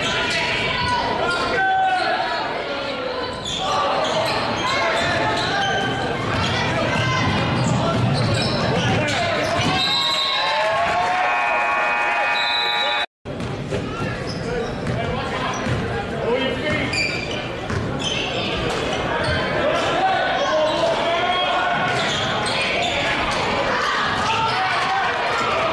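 A basketball bouncing on a hardwood gym floor during play, with players' and spectators' voices echoing in the large hall. A short held tone sounds about eleven seconds in, and the sound cuts out for an instant just after it.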